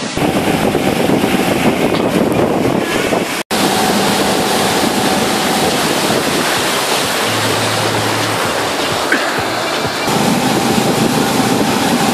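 Motorboat running at towing speed, its engine under a loud rush of churning wake water and wind buffeting the microphone. The sound cuts out for an instant about three and a half seconds in.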